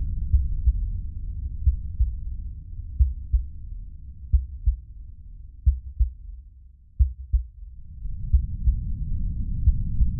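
A heartbeat-like sound effect: paired low thumps, about one pair every 1.3 seconds, over a deep rumbling drone. The drone thins out around seven seconds in and swells back toward the end.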